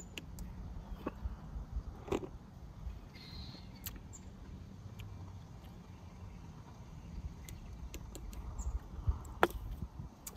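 Quiet outdoor background: a steady low rumble with scattered small clicks and taps.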